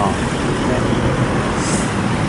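Steady road traffic noise from cars and a pickup truck passing close by, with a brief high hiss near the end.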